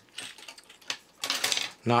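Light clicks and rattles of 3D-printed plastic robot parts being handled, followed by a short rustling stretch.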